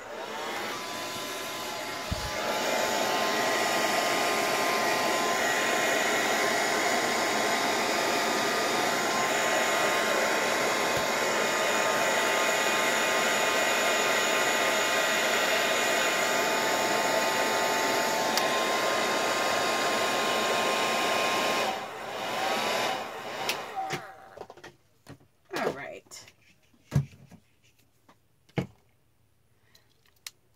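Hand-held blow dryer running steadily to dry wet watercolour on paper. It is quieter for the first two seconds, then steps up louder, and is switched off about 22 seconds in, winding down. A few light knocks and taps follow.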